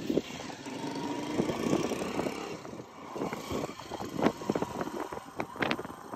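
Motorcycle taxi engine running at road speed, heard from the pillion seat, with frequent rustles and knocks close to the microphone.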